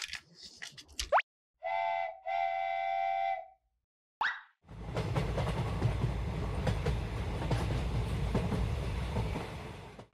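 Clicks of plastic parts snapping together, a plop, then a steam-train whistle toots twice, a short toot and a longer one. After another plop, the battery-powered toy engine's gear motor and wheels run steadily across the table for about five seconds.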